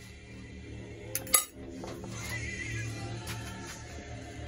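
A metal fork set down on a ceramic plate: two quick clinks a little over a second in, the second one louder and ringing briefly.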